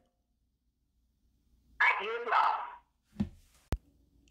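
Silence, then about two seconds in a short spoken reply lasting about a second, followed by a soft thump and a single sharp click near the end.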